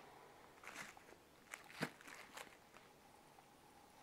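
A few faint clicks and crinkles of plastic-wrapped soap bars being handled in a plastic tub, the sharpest a little under two seconds in.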